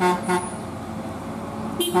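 Truck horn sounding in short toots: two quick blasts at the start and more near the end, over a steady engine drone.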